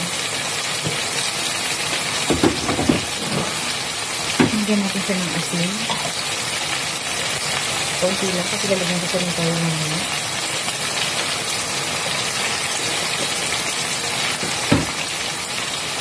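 Chicken, potatoes and onion frying in a pan over a gas flame: a steady sizzle, broken by a few short sharp clicks.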